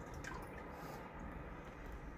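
Faint drips and small water sounds from a glass tank as its surface settles after boilies are dropped in, over a low steady hum.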